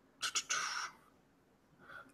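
Two quick mouth clicks followed by a short breath, about half a second long, before speaking.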